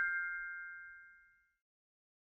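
A bell-like 'ding' sound effect, a single chime ringing out and fading away within about a second and a half.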